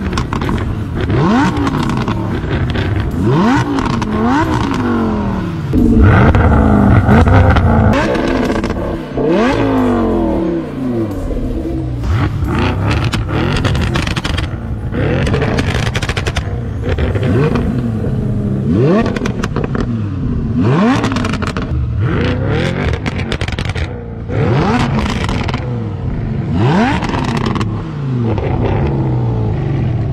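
Lamborghini Huracan LP610-4's V10 and Audi S7 Sportback's twin-turbo V8, both on catless valved Fi Exhaust systems, revved again and again while standing still, each rev sweeping up in pitch and dropping back. The longest, loudest revs come about six to eight seconds in.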